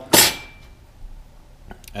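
A metal ring plate from a fuel pump assembly set down on a workbench: one sharp metallic clink that rings briefly, followed near the end by a couple of faint small clicks.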